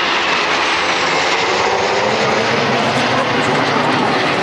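Jet engine roar of four Blue Impulse Kawasaki T-4 jets flying overhead in formation, loud and steady, with a whine that slowly falls in pitch as they pass and move away.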